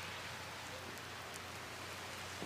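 Faint, steady hiss like light rain from heavy falling snow, with no distinct events.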